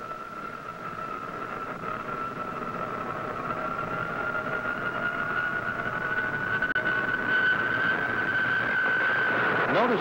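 Jet engine running up for a catapult launch: a steady high whine that grows steadily louder and edges slightly up in pitch, cutting off near the end.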